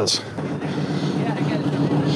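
Small tractor engine idling steadily, starting about half a second in.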